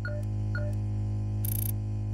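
Electronic intro sound design: a steady low synth drone, with two short beeps about half a second apart near the start and a brief very high tone in the middle.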